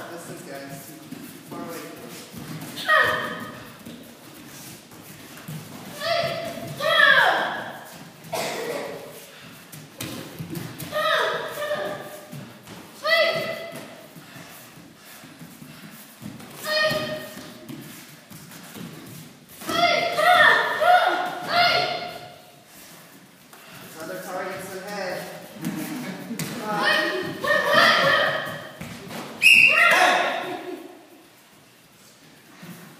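Children's short, high-pitched karate shouts (kiai) every few seconds during sparring, with thuds of bare feet and gloved strikes on foam mats between them.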